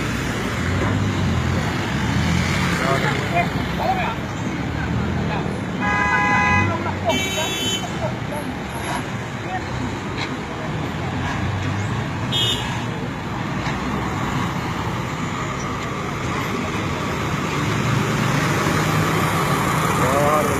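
Street traffic with vehicle engines running and a vehicle horn honking: a blast about six seconds in, a higher-pitched one just after, and a short toot around twelve seconds in.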